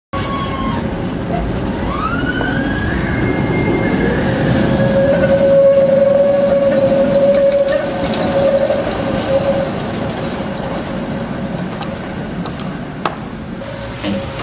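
Electric street tram running on its rails: a whine that rises in pitch about two seconds in, then a strong steady high tone that swells through the middle and fades out. A sharp knock comes near the end.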